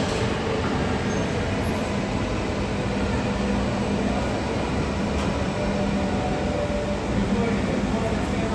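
Boeing 737 MAX airliner's CFM LEAP-1B turbofan engines running at low taxi power, a steady rushing noise with a low, even drone underneath.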